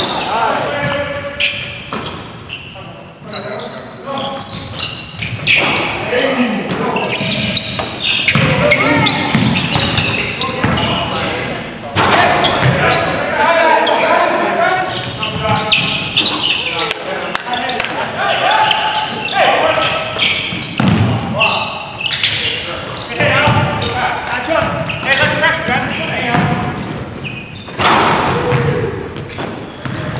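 Basketball game in a gym: the ball bouncing on the hardwood court amid players' voices calling out, all echoing in the large hall.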